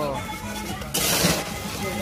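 Crushed ice and a plastic bag crunching and rustling as a bagged pack of fish is pushed down into ice in a cooler box. It comes once, about halfway through, and lasts under half a second.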